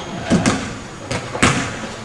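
Two sharp basketball impacts about a second apart, echoing around a gymnasium.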